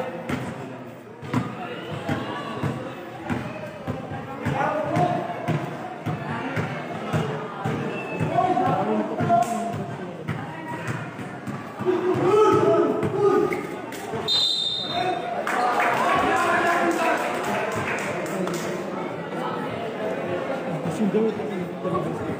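A basketball bouncing on a concrete court, struck again and again in play, under continuous voices and shouts from spectators.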